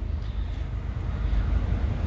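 Steady low rumble with a faint hiss and no distinct events: background noise in a van's cab.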